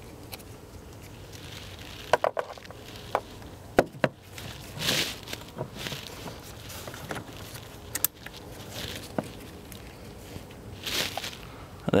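Sharp clicks and clacks of an AC dye-injector tool's quick-connect coupler being handled and snapped onto a truck's low-side AC service port: a cluster in the first four seconds and one more about nine seconds in. Two brief rushes of noise fall between them.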